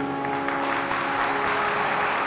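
Harmonium holding one steady note, with hand-clapping under it.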